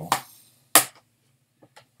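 A plastic disc case snapping shut with one sharp click, followed a second later by a couple of faint taps.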